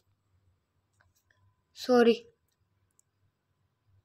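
A few faint clicks from typing on a smartphone's on-screen keyboard, with one short spoken word about two seconds in.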